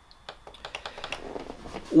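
A rapid, irregular run of small clicks and ticks, growing louder toward the end.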